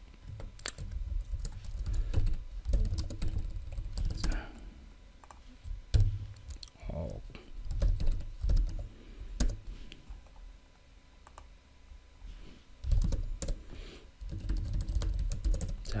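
Computer keyboard typing: irregular bursts of keystrokes and clicks, with low thumps.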